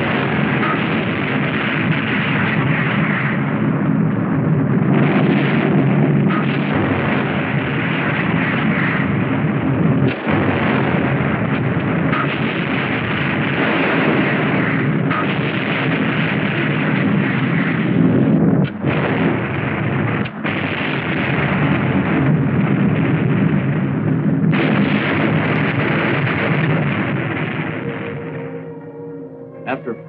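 Depth-charge explosions on an old film soundtrack: a continuous heavy rumble, renewed by a fresh blast every two or three seconds and easing off near the end.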